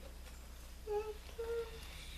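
A person humming two short held notes, about a second in and again half a second later, over a steady low electrical hum.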